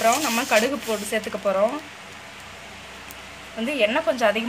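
Hot oil sizzling steadily in a steel pan, heard clearly in a pause between stretches of speech.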